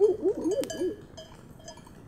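Livestock bells on a sheep flock ringing faintly and intermittently, with a few short pitched calls in the first second and one sharp click.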